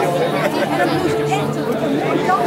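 Overlapping chatter of many voices in a large hall, with held music notes sounding underneath.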